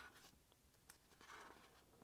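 Faint rustle of the heavy pages of a large hardcover book being handled and turned, with a soft click about a second in.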